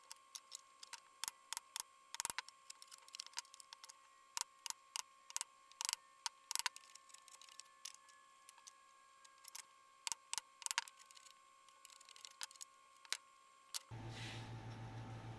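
Irregular light clicks and taps of hand tools being handled and set down on a wooden bench, over a faint steady hum.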